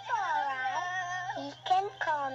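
Cartoon young rabbit's high child voice laughing in long, swooping giggles, played from a VHS tape through a TV speaker.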